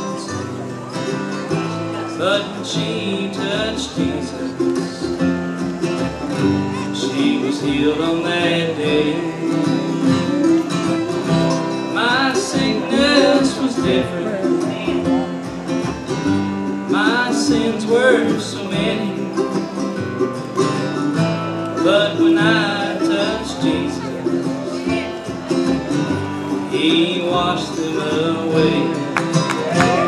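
Live bluegrass gospel band playing: mandolin, two acoustic guitars and upright bass, with melodic lines that bend in pitch at times.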